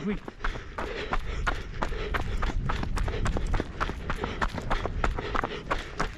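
Trail runners' footfalls on a rough fell path, going downhill in quick, fairly even strikes several times a second.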